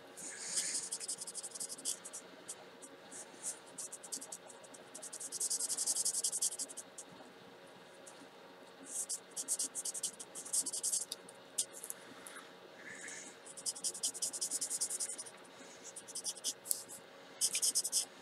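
Spectrum Noir alcohol marker nib scratching across cardstock as a flower is coloured in, in bursts of rapid back-and-forth strokes a second or two long, with short pauses between.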